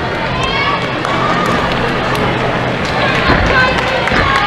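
Indistinct voices and chatter of many people in a large hall, with a few scattered knocks.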